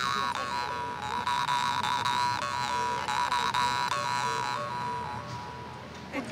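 Yakut khomus (jaw harp) playing a steady twanging drone, its overtones wavering as the mouth shapes them; it fades near the end.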